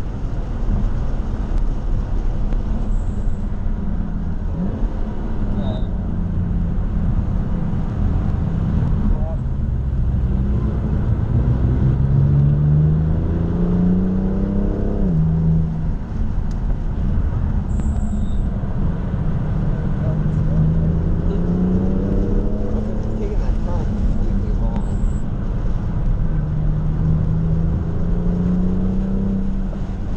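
BMW F80 M3 Competition's twin-turbo inline-six heard from inside the cabin on track, pulling hard: the engine note climbs, drops sharply at an upshift about halfway through, then climbs again. Steady road and tyre rumble runs underneath.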